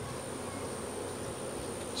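Honey bees buzzing steadily around an opened hive, with brood frames lifted out of the box.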